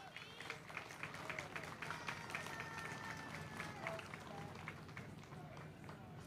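Faint footsteps on a stage, scattered light ticks under a low murmur of distant voices.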